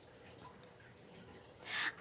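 Very quiet room tone, then a short breath drawn in near the end, just before singing begins.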